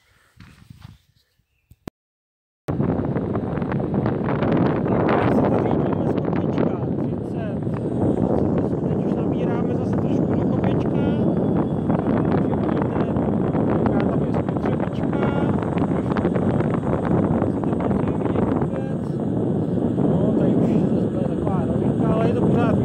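Riding noise from an electric kick scooter with a front hub motor: wind on the microphone and tyres on the road in a loud, steady rush. It starts suddenly about three seconds in, after near silence.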